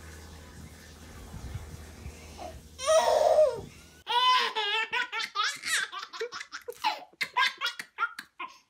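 A woman and a baby laughing hard together in quick, repeated bursts from about halfway in. Before that there is a low steady hum and one brief loud burst.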